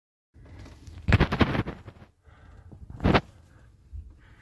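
A few knocks and handling noises: a cluster of clattering knocks about a second in and one sharp knock near three seconds, over a low noisy background.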